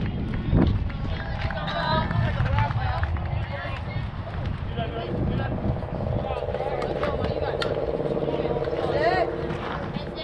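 Indistinct voices of players and spectators talking and calling out at a softball field, with a steadier held calling or chant in the middle of the stretch. A single sharp knock sounds about half a second in.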